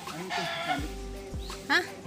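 Background music with a chicken clucking, and one short, loud squawk near the end.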